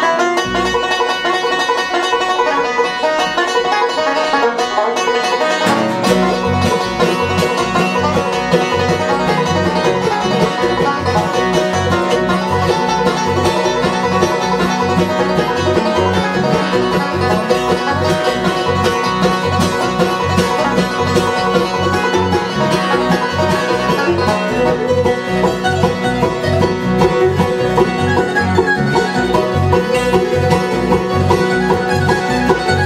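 Bluegrass jam in three-quarter time, played fast: banjo rolls and acoustic guitar picking, with an electric bass coming in about six seconds in and a mandolin joining.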